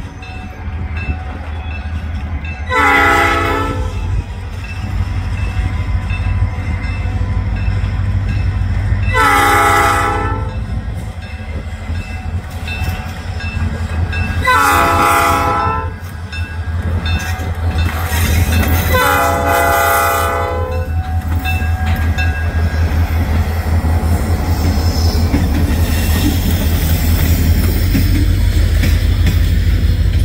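Diesel freight locomotive sounding its multi-note horn four times for a grade crossing, the last blast the longest, over the low rumble of its engine. In the second half, the wheels of the passing freight cars click steadily over the rail joints, growing louder.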